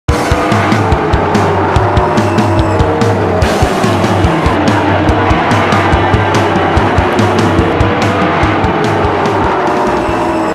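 Music with a steady drum beat over stock car engines running at speed on an oval track, their pitch rising and falling as the cars pass.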